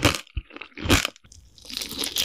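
Close-miked ASMR eating: several crisp, crunchy bites and chewing, a few sharp crunches followed by a run of smaller crackles.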